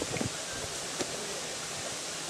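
Steady outdoor background hiss with a couple of faint clicks as a husked coconut is picked up and set down on a rock.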